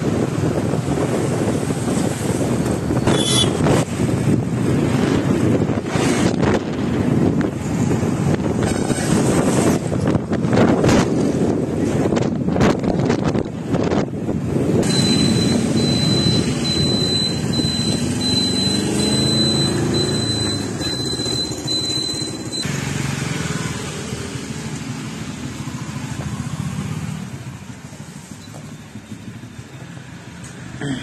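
Motorcycle riding along a road: engine and road noise with wind buffeting the microphone. A steady high whistle joins for several seconds past the middle while the engine pitch rises, then the sound quietens near the end as the bike slows.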